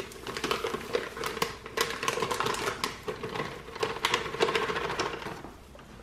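Paper cake-mix pouch crinkling and rustling as it is shaken and tapped empty, with dry sponge mix pouring into a glass mixing bowl: a run of irregular small crackles and clicks.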